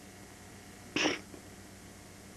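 A single short, sharp, breathy burst from a person's voice about a second in, over quiet tape hiss.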